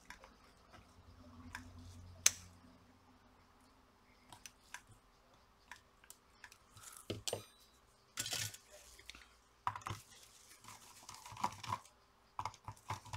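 A small tool prying and scraping at the rubber tabs on the edge of a plastic power bank case: faint scrapes and clicks, one sharp click about two seconds in, and louder scraping in the second half.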